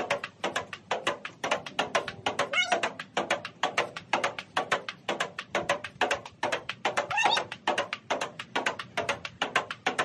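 Table tennis ball clicking back and forth between a rubber paddle and the upright half of a table in a fast, steady rally, about four or five hits a second.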